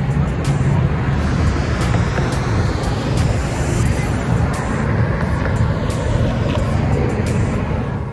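Street traffic noise: a steady low rumble, with a car passing about three to four seconds in.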